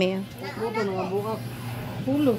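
Only speech: a quiet voice talking, with a steady low hum underneath.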